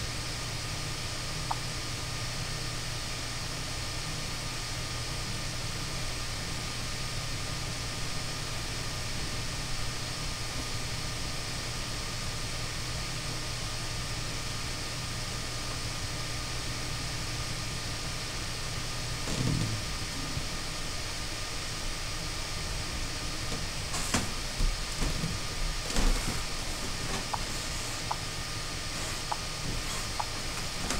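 Steady low hum and hiss of background noise with no speech, broken by a low thump about two-thirds of the way through and a few clicks and knocks near the end.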